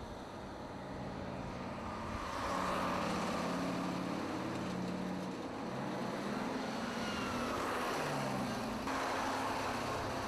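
A motor vehicle's engine running, growing louder about two seconds in, its pitch shifting up and down as the revs change.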